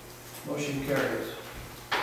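Low voices talking in a large room, then a single sharp knock just before the end.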